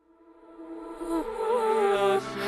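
A buzzing drone with several pitched layers swells up from silence over about a second, its pitch wavering partway through.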